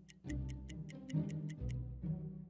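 Countdown timer sound effect: clock-like ticking, about five ticks a second, over soft background music, marking the time left to answer.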